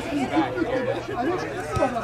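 Men's voices chatting, and one short, low thump near the end: a soccer ball being kicked.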